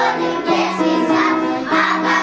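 A group of young children singing a song together in unison, with held notes.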